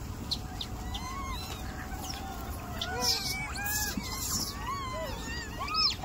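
A troop of macaques calling, many short rising-and-falling squeaks and coos overlapping one another, with a louder scuffle-like burst about halfway through and a sharp call near the end.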